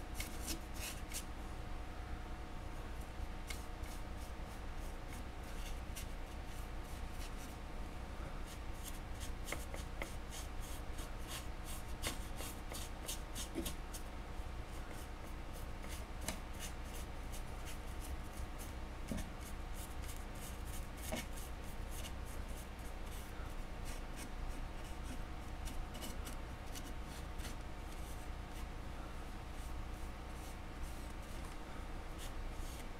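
Paintbrush bristles dabbing and scratching paint onto a sculpted model tree: an irregular run of small scratchy ticks, heard over a steady low hum.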